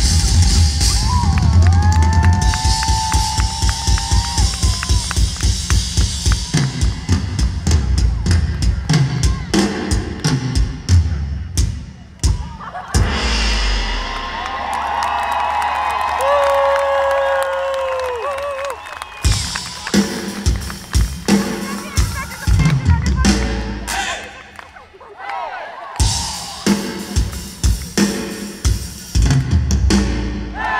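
Live rock drumming on a Sonor drum kit: steady bass drum and snare with fast fills, and a voice singing or calling over it at times. The drumming thins out for several seconds around the middle and drops briefly again later before coming back in.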